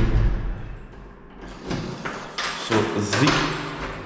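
A dull thump at the start, then a couple of seconds of rustling close to the microphone, before a man's voice near the end.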